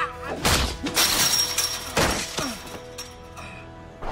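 Film fight-scene soundtrack: background score music with sharp hit and crash sound effects about half a second, one second and two seconds in, one of them like something shattering. It quietens toward the end.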